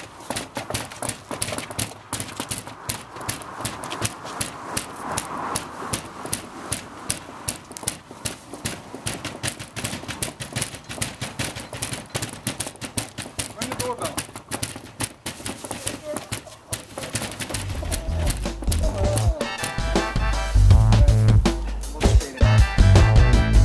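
Rapid, repeated knocking on a house's front door, several knocks a second, kept up without a break. Music with a heavy bass beat comes in near the end and grows louder.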